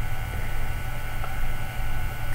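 Steady low electrical hum with a thin background hiss, unchanging throughout, typical of a recording setup's mains hum.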